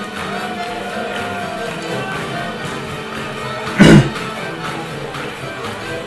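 Live swing band playing for solo jazz dancing. About four seconds in, a short, loud vocal sound cuts in briefly.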